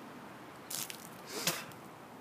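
A man's breathing after the cinnamon challenge: two short, sharp, noisy breaths, the second louder, as he clears the cinnamon from his mouth and throat.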